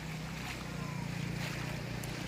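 SUV driving through street floodwater: a low steady engine hum over the wash of water pushed aside by the wheels.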